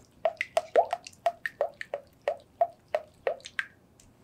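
A whisk beating runny egg batter in a glass bowl: about a dozen quick clicking strokes, roughly three a second, stopping shortly before the end.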